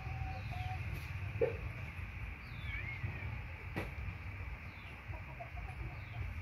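Faint bird calls over a steady low rumble: a short lower call about one and a half seconds in, a few high chirps around the middle, and one sharp click just before four seconds.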